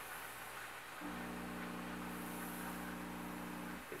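Pro6 Duo continuous-fill steamer's electric pump buzzing at a steady, constant pitch. It starts abruptly about a second in and cuts off just before the end.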